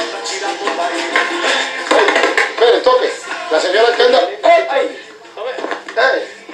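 Television broadcast sound heard through the set's speaker: background music with voices talking over it.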